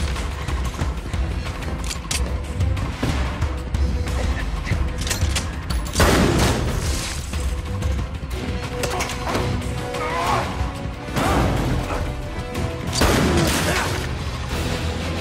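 Action film score over a deep, steady low rumble, with booming hits. Loud sweeping surges come about six seconds in and twice more near the end.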